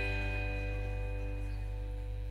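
An acoustic guitar's last strummed chord ringing on and slowly fading, over a low steady hum.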